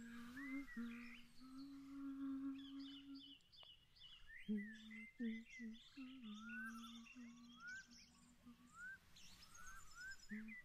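A woman softly humming a slow tune in long held notes, with a pause of about a second a third of the way in, over a background of many birds chirping.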